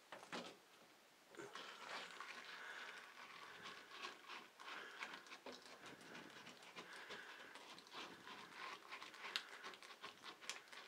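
Faint handling noise: soft rustling and scattered small clicks as a silicone back-scrubber pad is handled and pressed against a shower wall by hand.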